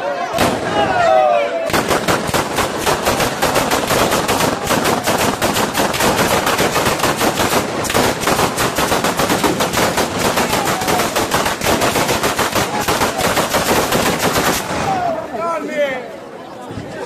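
Batteria alla bolognese: a long chain of firecrackers strung along ropes going off in a rapid, continuous crackle of bangs. It starts about two seconds in, runs for about thirteen seconds and stops shortly before the end, with shouts just before it and as it ends.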